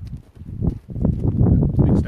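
Footsteps moving up a mound: a run of irregular dull thuds with low rumble.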